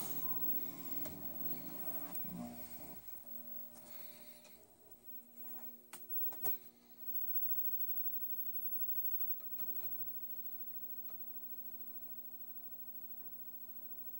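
RCA SJT400 CED videodisc player running its mechanism after auto-loading a disc, as it spins up to start playing. There is a faint mechanical whir that fades over the first few seconds, then a faint steady hum and a couple of soft clicks about six seconds in.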